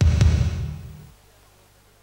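A single deep booming hit, a music stinger for a round title card, starting suddenly and dying away over about a second.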